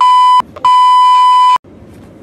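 Censor bleep: a loud, steady 1 kHz tone sounding twice, a short bleep and then a longer one of about a second, masking the swearing in the clip.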